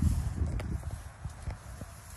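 A few footsteps through grass, with low wind rumble on the phone's microphone.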